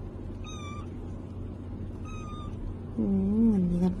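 A kitten mewing: two short high-pitched mews, about half a second and two seconds in, then a louder, longer meow at a lower pitch that wavers up and down near the end.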